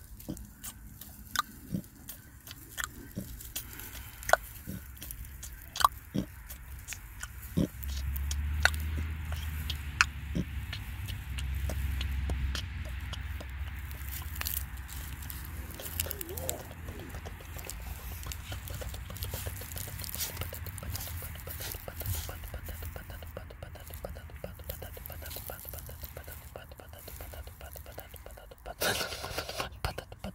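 A person's breathy, whispered vocal sounds without words, over scattered sharp clicks that thin out after about ten seconds and a low steady hum through the middle, with a loud noisy burst near the end.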